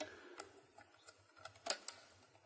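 A handful of small, sharp plastic clicks and ticks as fingers handle the spring-loaded loading flap on a modded Nerf Barricade's internal magazine, the sharpest two near the end.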